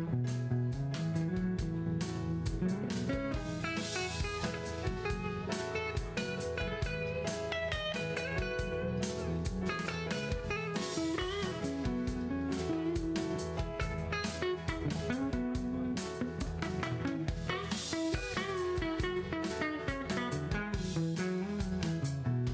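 Live band playing an instrumental passage: electric guitar and bass guitar over a steady drum beat.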